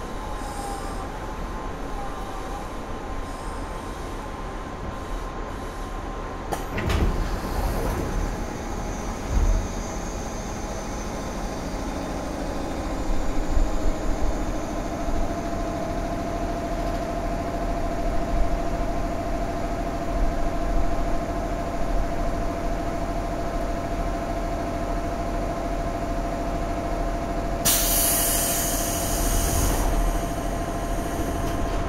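Inside the cab of a JR 415-series electric multiple unit drawing to a stop at a platform: a steady electrical hum, with a short clatter and thump a few seconds in. Once the train is standing, a steady drone takes over, and near the end there is a loud burst of hissing air.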